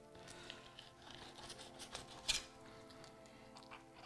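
Soft background music with faint crackling and scraping of a thin-bladed fillet knife slicing a crappie fillet along the backbone and rib cage; one sharper crackle about two seconds in.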